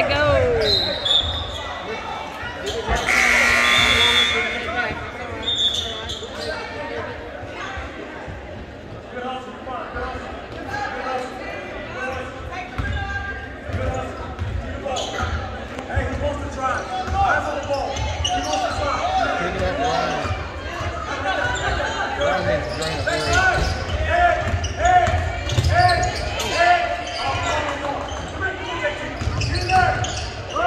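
Basketball game in a gymnasium: a ball dribbling on the hardwood floor and spectators' voices echoing in the large hall, with a loud buzzer blast about three seconds in.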